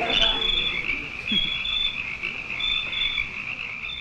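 Night swamp ambience: crickets chirping in a steady high chorus, with frogs croaking, one low falling croak coming about a second and a half in.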